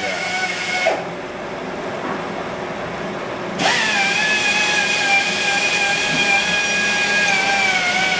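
A Sunnen honing machine spinning its mandrel with a steady whine while a kingpin bushing in a Datsun truck spindle is honed. The whine cuts out about a second in and starts again some two and a half seconds later with a brief rise, then sinks slightly in pitch.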